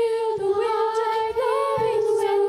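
Children's a cappella group singing unaccompanied into microphones, holding a long note in close harmony, with a slight step up in pitch about one and a half seconds in.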